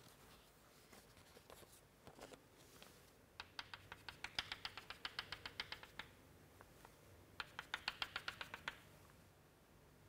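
Chalk tapping rapidly on a chalkboard as dotted lines are drawn: two runs of quick, even taps, about nine a second, the first lasting a couple of seconds and the second shorter, after a few faint chalk strokes.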